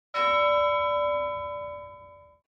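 A single bell-like chime, struck once and ringing out with several clear tones that fade away over about two seconds.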